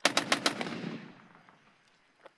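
A short burst of automatic fire from a Kalashnikov-pattern rifle, about seven shots in just over half a second, with the echo dying away over the following second.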